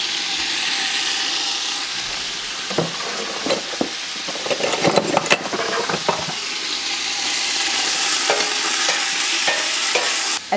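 Ground beef frying in hot oil in a large pot, sizzling steadily, with a cluster of knocks and scrapes of a utensil against the pot about three to six seconds in as the meat is spread out to brown.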